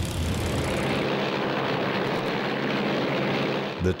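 Piston engine of a light propeller aircraft droning steadily in flight, with a low hum and a rough, even texture. It dips briefly near the end.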